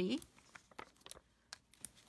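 Faint rustling and a few light ticks of cardstock being handled as small adhesive foam dimensionals are peeled from their backing and pressed onto a paper layer.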